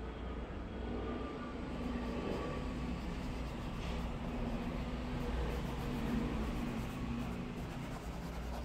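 Steady low rumble with a faint hum underneath, swelling and easing slightly a couple of times, like background machinery or distant traffic.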